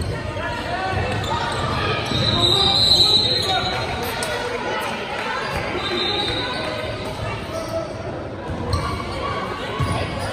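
Many voices talking at once, echoing in a large gymnasium, with basketballs bouncing on the hardwood floor. A few brief high squeaks come through, about two and a half seconds in and again about six seconds in.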